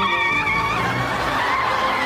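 A Mini's tyres squealing as it swings hard round a corner: a high, wavering screech that turns rougher and noisier about halfway through.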